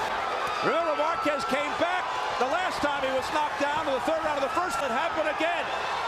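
Boxing broadcast sound: indistinct voices throughout, with repeated short sharp smacks of gloves landing.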